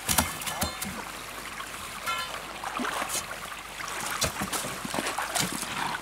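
Shallow seawater lapping and trickling around floating ice floes, with small splashes, a few sharp knocks and brief bits of voice.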